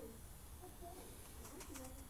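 Faint bird cooing, a few short low calls.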